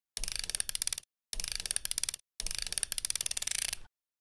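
Rapid mechanical ratcheting clicks in three bursts with short silent gaps between them, the last burst the longest.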